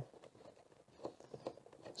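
Faint handling noises: a few small clicks and rustles of hands working inside a car boot at the rear light cluster's plastic fixings, mostly quiet in between.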